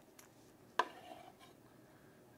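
Knife and wooden chopping board knocking together as sliced steak is handled: a light tap, then one sharp knock a little under a second in.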